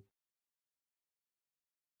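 Near silence: the sound track drops to dead silence between words.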